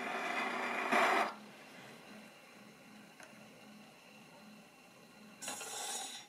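HMV Model 32 horn gramophone with a 78 rpm shellac record still turning after the music has ended: faint surface hiss from the needle in the groove. There is a short, louder scratchy burst about a second in and another near the end.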